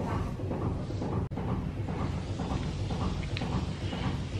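Washing machine running its tumble-dry cycle: a steady low rumble, which drops out for an instant about a second in.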